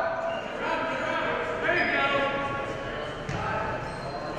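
Several voices shouting and calling out at once, coaches and spectators yelling to wrestlers on the mat, echoing in a large gym.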